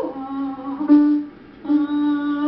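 A woman's voice singing an octave-leap vocal exercise, chest voice on the bottom and head voice on the top. She drops an octave from the high note to a held low note, breaks off briefly after about a second and a half, and starts the next low note.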